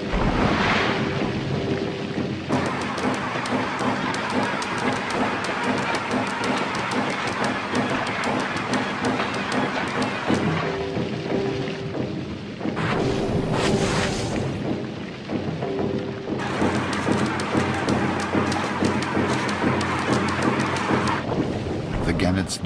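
Gannets plunge-diving into the sea: a dense, rain-like patter of many splashes into water, with two rushing sweeps, one near the start and one about thirteen seconds in. Music with sustained notes plays underneath.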